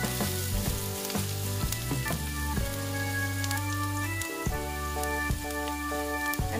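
Onions sizzling in hot oil in a pan, with small crackles, under background music with a strong bass line.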